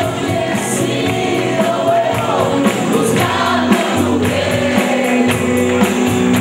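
Live band playing a song: several voices singing together over keyboard, guitars and drum kit, with a steady ticking cymbal beat.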